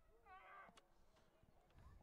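Near silence with one faint, brief distant voice calling about half a second in.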